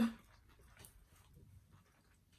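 A brief laugh right at the start, then near quiet with faint soft mouth noises of people chewing food.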